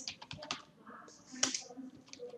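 Computer keyboard keys clicking as a word is typed: several quick keystrokes near the start, then a single sharper one about a second and a half in.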